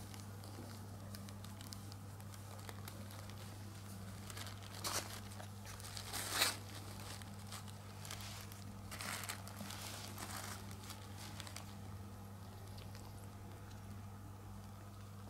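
Plastic sheet crinkling in a few short rustles as the kitten and the hands holding it move on it, loudest about six and a half seconds in, over a steady low hum.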